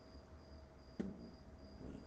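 Faint, regular high-pitched chirping of an insect, about three chirps a second, with a single sharp click about a second in.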